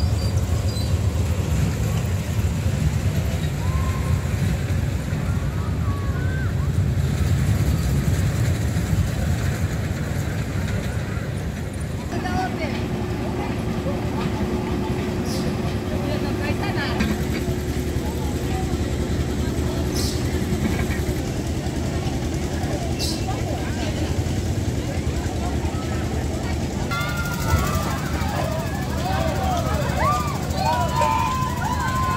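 Fairground din: a steady low rumble of ride machinery mixed with crowd voices, with a held mechanical tone partway through and livelier voices near the end.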